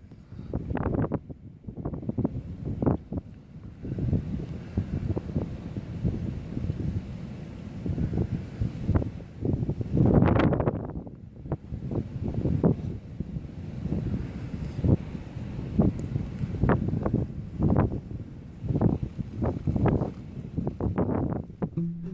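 Wind buffeting a microphone in irregular, rumbling gusts, with the strongest gust about halfway through.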